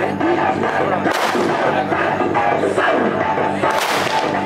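Aerial fireworks bursting: two sharp bangs, one about a second in and one near the end, over continuous music and voices.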